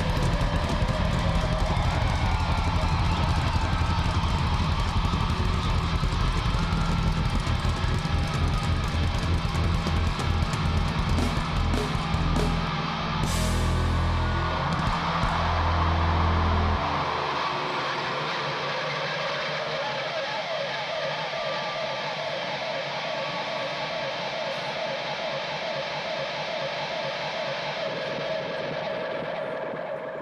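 Live rock band with drums, bass and distorted guitar playing loudly through a song's ending. The heavy final chord rings out and stops suddenly about two-thirds of the way in. A steadier crowd noise follows and fades away near the end.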